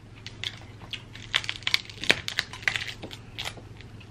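Cooked snow crab leg shells being cracked and snapped apart by hand. A quick run of sharp cracks and crunches comes thickest between about one and three and a half seconds in.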